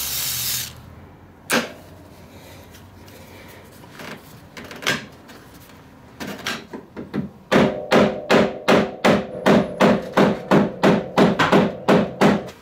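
A short hiss of aerosol spray at the start, then hammer blows on a snowmobile's old hyfax slider, driving it backwards off the skid rail. A few scattered blows come first, then a steady run of about three a second, each with a metallic ring.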